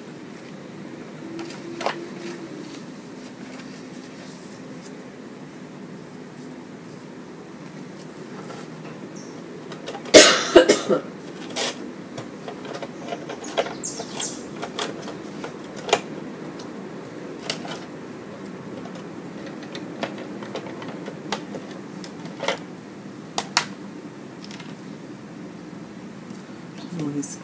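Soft rustles and light taps of a paper template and fabric being handled and smoothed flat on a cutting mat, with a brief louder burst of noise about ten seconds in, over a low steady hum.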